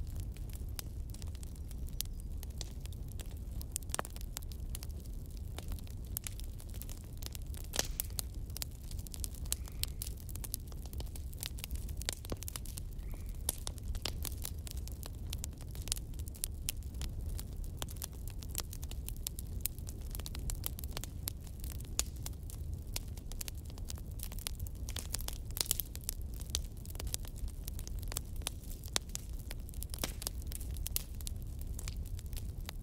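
Wood fire in a fireplace crackling: frequent small, irregular pops and snaps over a low, steady rumble of the flames.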